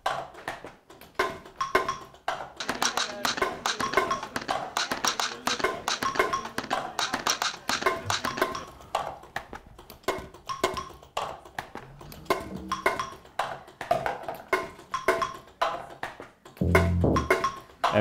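Dada Machines music robots: small motor-driven strikers tap wooden bars and other objects in a looping sequence, making a quick, repeating rhythm of wooden taps and knocks. Near the end a low steady tone joins in.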